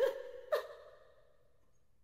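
A person's breathy vocal sound: a short gasp-like breath about half a second in that dies away within half a second, then near silence.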